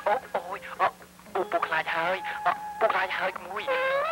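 Film dialogue: raised, distressed voices crying out and speaking, with a faint steady low hum underneath from the old soundtrack.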